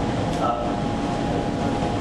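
A man's hesitant "uh" through a lectern microphone, then a pause filled by a steady low rumble and hum of room noise.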